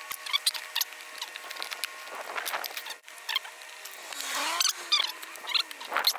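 Electrical tape being pulled off the roll and pressed around a cardboard box, a scatter of small crackles, clicks and squeaks.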